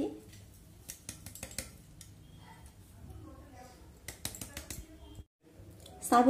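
Faint scattered clicks and taps of a steel mixer jar knocking against a pan while dry ground powder is poured out of it, over a low background hum.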